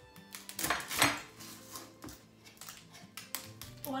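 Chef's knife cutting through an onion onto a wooden cutting board: a few sharp knife strikes in the first second or so, the loudest about a second in, then lighter scattered taps.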